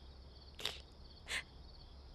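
Faint crickets chirping in a steady pulsing pattern, with two sharp sniffles from a woman crying, the first about half a second in and the second just past a second.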